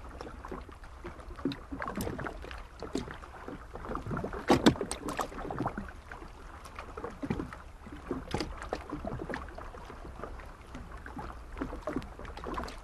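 Harbour ambience: a continuous busy mix of irregular knocks and creaks over a low rumble, with a louder burst about four and a half seconds in.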